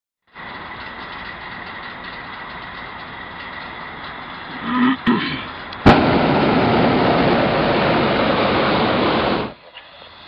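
Hot-air balloon propane burner firing: a sharp click about six seconds in, then a loud steady rush of burning gas for about three and a half seconds that cuts off suddenly. Before it, a quieter steady hiss.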